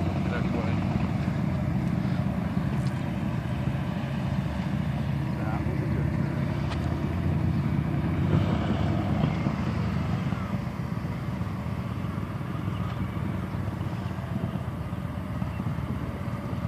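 2003 Victory cruiser's V-twin engine running at low speed as the bike is ridden slowly, a steady low rumble that gets slightly quieter over the last several seconds.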